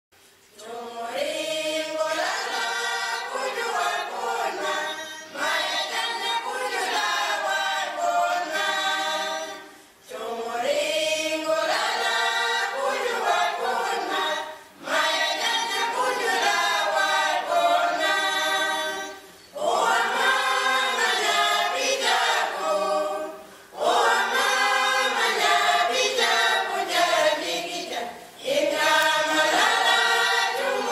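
A choir singing unaccompanied in long phrases, each ending with a short break before the next begins, about every four to five seconds.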